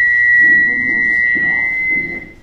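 Microphone feedback through the PA system: a loud, steady high-pitched ring with a fainter overtone above it, dying away at the end.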